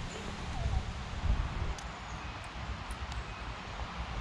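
Outdoor ambience with wind buffeting the microphone, a fluctuating low rumble under a steady hiss, and a few faint small ticks from hands handling the fishing rig.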